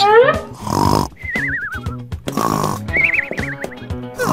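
Cartoon sound effects over a children's music backing: a quick falling glide at the start, then two warbling whistle tones, the first sliding downward, with short noisy bursts between them.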